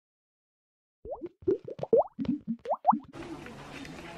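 A quick run of about a dozen short popping notes, many sliding upward in pitch, an edited-in sound effect over the opening photo. About three seconds in it gives way to the steady hiss of an outdoor recording.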